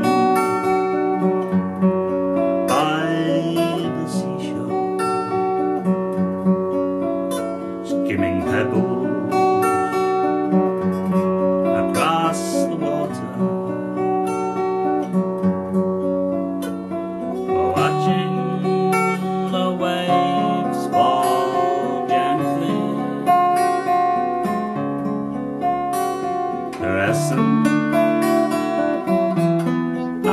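Tanglewood TW40 OANE acoustic guitar played fingerstyle: an instrumental break in a folk song, picked melody and chords with several sharper chord attacks along the way.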